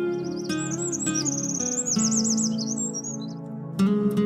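Gentle acoustic guitar music with slow plucked notes, and birdsong laid over it: quick, high, warbling chirps and trills that stop about three seconds in. A new guitar strum comes near the end.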